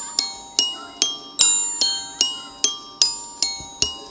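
Glockenspiel struck with mallets in a steady repeating figure of bright, ringing notes, about two and a half a second.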